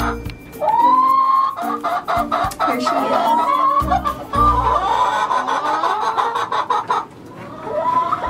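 Hens clucking and squawking with repeated drawn-out calls that rise and then hold, over background music with a beat.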